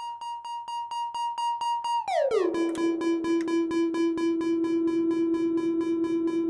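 Buchla Music Easel synthesizer sounding a steady high tone with a regular pulsing. About two seconds in the pitch glides smoothly down to a lower, brighter, buzzier tone that keeps pulsing quickly.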